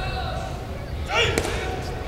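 Voices in a large sports hall, with one loud call about a second in and a sharp knock just after it.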